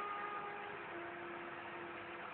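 Electric hair clipper running steadily as it cuts short hair off the scalp, a faint hum over a steady hiss.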